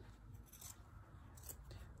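A couple of faint, sharp snips from small appliqué scissors with a pelican-bill blade, cutting thin stretch fabric close to the seam, in a nearly silent room.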